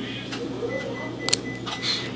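A flat screwdriver tip prying under a small part in a smartphone's opened frame: a single sharp click about a second in and a brief scrape near the end, over quiet room background.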